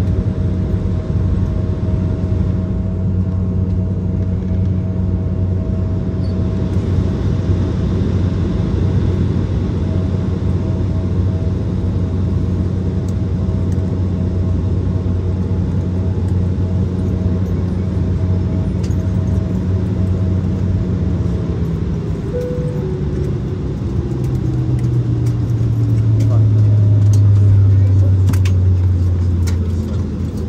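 Steady machinery hum with several held tones, heard inside the cabin of a parked Embraer 170 regional jet. A little past two-thirds through, the tones glide down in pitch and a deeper drone grows louder near the end.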